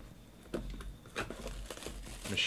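Clear plastic wrapping crinkling and rustling as a trading-card box is handled and opened, in a few short separate crinkles.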